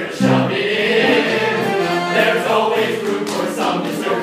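An all-male chorus singing a comic show tune together.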